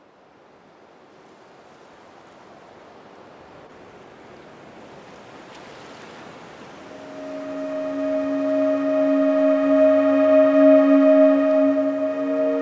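A soft rushing noise swells slowly out of silence. About seven seconds in, a sustained ringing tone with many overtones joins it, pulsing slightly as it grows loud.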